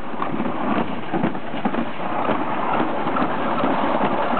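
Summer toboggan sled running fast down its slide chute: a steady rattling, scraping rush of the sled on the track, dotted with small knocks.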